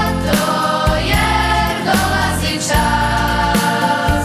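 Children's choir singing a Christmas song in unison over an instrumental backing with a steady bass line.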